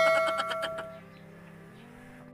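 A bell-like chime ringing and fading out about a second in, followed by a quiet stretch.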